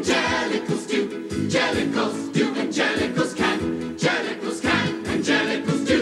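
A musical-theatre ensemble singing in chorus over lively instrumental accompaniment with a steady, punchy beat of about two strokes a second.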